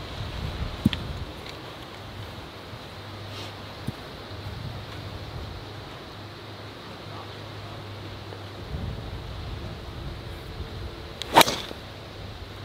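A golf driver swung and striking a ball off the tee: a single sharp crack near the end.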